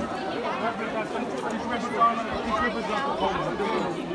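Crowd chatter: many people talking at once at an outdoor gathering, a steady babble of overlapping voices with no single speaker standing out.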